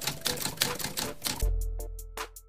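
Typewriter key-clicking sound effect, a rapid run of clicks about eight to ten a second, over background music, with a deep bass hit about one and a half seconds in.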